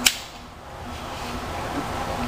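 A single sharp click of a seat belt buckle latching on a leg extension machine, right at the start.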